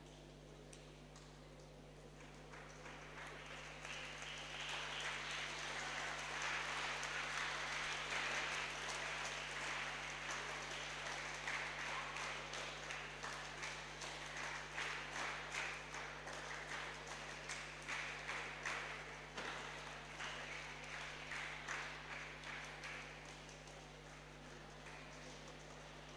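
Applause from a small group of people, swelling about two seconds in, then thinning into separate, fairly regular hand claps that fade near the end.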